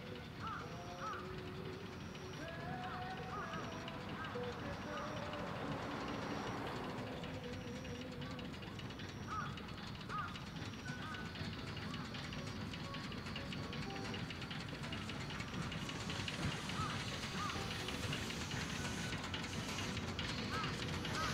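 A steady rumble from a narrow-gauge forest railway train, growing louder over the last few seconds. Over it are faint voices and park music, and a short high beep about once a second that stops about three quarters of the way through.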